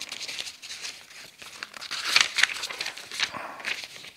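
Loose printed paper sheets rustling and crinkling as they are leafed through, in irregular bursts that are loudest about two seconds in.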